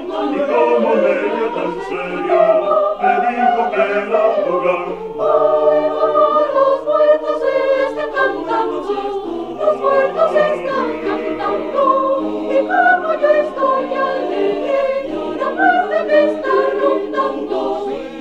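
Mixed four-part choir singing a cappella in Spanish, the voices moving in overlapping, interlocking lines over a bass part that steps between low notes.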